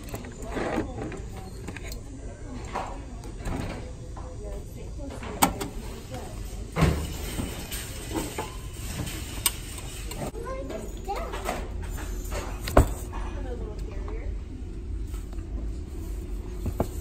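Indistinct background voices over a steady low hum, with a few sharp knocks and clicks as items on a shelf are handled, the loudest near the end.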